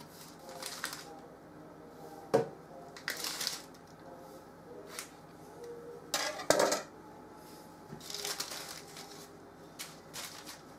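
A metal baking tray knocking and clattering, with the rustle and scrape of baking paper, as floured dough loaves are pushed together on it. There is a sharp knock a little over two seconds in and a louder double clatter just past the middle.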